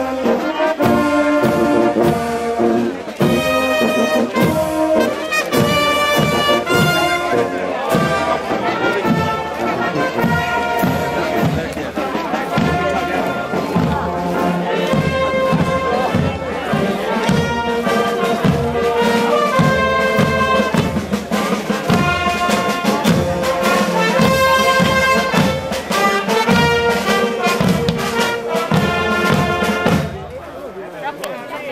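Marching brass band with trumpets and trombones playing a march over a steady beat; the music stops right at the end.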